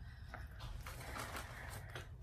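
Faint soft mouth and handling noises as marshmallows are pushed into an already full mouth, with a few small clicks and a soft rustle near the middle, over a low steady hum.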